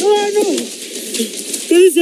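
A person's voice crying out: one held cry about half a second long that falls away at its end, then a shorter, wavering cry near the end.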